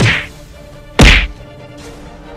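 Two loud whack-like blows about a second apart, each a short sharp hit with a brief falling tail: slap sound effects for a scuffle.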